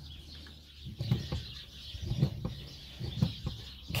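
Brake pedal of a Renault Grand Scénic being pumped by foot with the engine off, giving short thumps and knocks in pairs about once a second. The pumping pushes the brake caliper pistons back out against newly fitted pads and discs.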